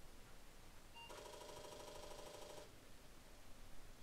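Apple IIe reboot: a short beep about a second in, then about a second and a half of a rattling buzz from the disk drive as it starts to boot.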